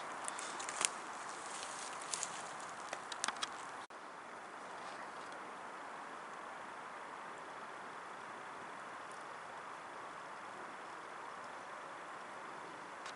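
Wood-gas camping stove burning freshly added wood: sharp crackles and pops over a steady rushing hiss. After about four seconds the crackles mostly stop and the hiss is a little fainter.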